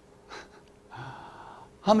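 A man's audible intake of breath through the mouth, drawn in for just under a second before he speaks, after a faint short sound about a third of a second in.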